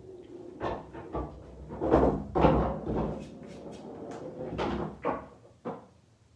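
A series of irregular knocks and thuds, about seven, the loudest around two seconds in, dying away near the end.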